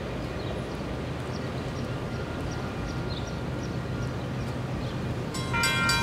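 Railroad grade-crossing warning bell starts ringing about five seconds in, in rapid, regular strokes with a ringing metallic tone, warning of an approaching train. Before it there is only a steady low outdoor rumble.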